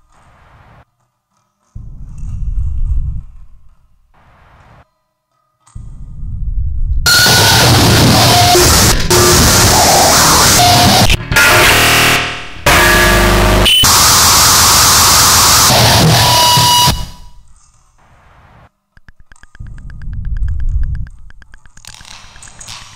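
Harsh noise music: low distorted rumbles swell up and cut off into dead silence, then a loud wall of harsh noise fills the whole range for about ten seconds, broken by a few abrupt dropouts, before the low rumbles return near the end.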